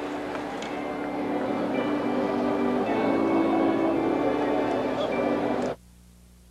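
Ballpark crowd murmur with music of long held notes over it, the notes changing about halfway through. It all cuts off suddenly near the end, leaving only a faint hum.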